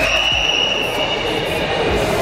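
Echoing background murmur of a busy indoor hall, with a steady high-pitched tone that sets in at the start and fades out near the end.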